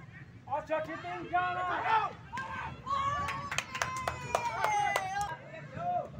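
High-pitched voices, children and spectators, shouting and calling out. Three seconds in, one voice holds a long drawn-out call for about two seconds, while a few sharp clicks sound over it.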